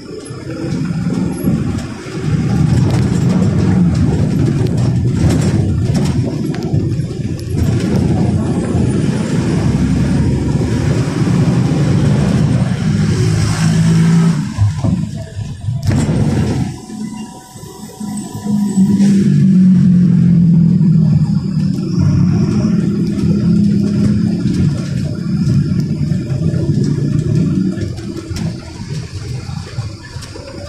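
Diesel engine of an AYCO-bodied Mercedes-Benz bus, heard from inside the passenger cabin, pulling the bus along under load. It swells loud about two seconds in, eases off briefly a little past halfway, then pulls strongly again.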